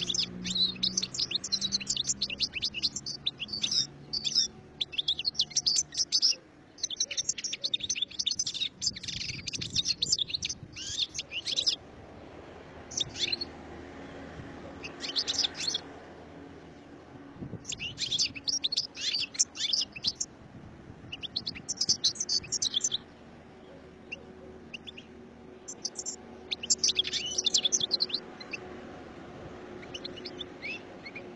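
European goldfinch singing: rapid, high twittering song that runs almost unbroken for about the first twelve seconds, then comes in shorter phrases with pauses between them.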